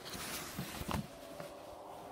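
Dry dog food being sprinkled out, a soft rustling patter with a few light clicks in the first second that then dies down.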